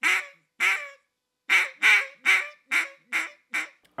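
Duck call blown as hen mallard quacks with the Cajun squeal: the tongue slides up toward the roof of the mouth, so each quack slurs into a raspy squeal. Two notes, a short pause, then six quicker notes that trail off in loudness like a greeting call.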